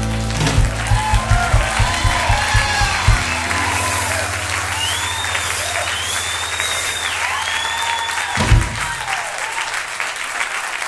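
Audience applauding and cheering as a blues band's final chord rings out, with a run of drum hits in the first three seconds and a low bass note held until it stops about eight and a half seconds in.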